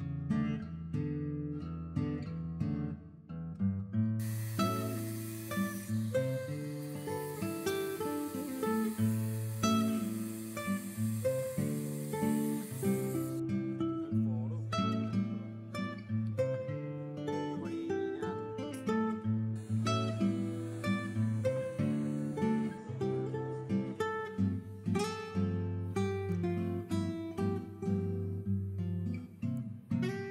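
Background music led by strummed and plucked acoustic guitar, with a steady high hiss over it for a stretch of several seconds early on and again briefly later.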